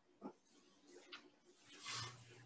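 Near silence: room tone, with a faint brief low sound about a quarter second in and a soft hiss near the end.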